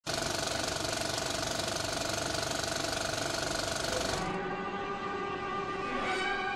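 Helicopter rotor noise, a rapid even chop with a steady whine, for about four seconds. It then gives way to string music with long held notes.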